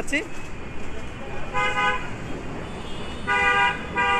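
A vehicle horn honking twice on the street, two steady single-pitch blasts about a second and a half apart, the second a little longer, over a background of traffic noise.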